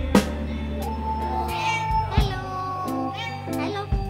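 A domestic cat meowing a couple of times over background music.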